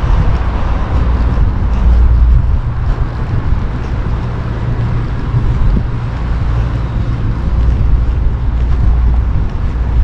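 Steady, loud, low rumble of outdoor background noise, heaviest in the bass, with no distinct event standing out.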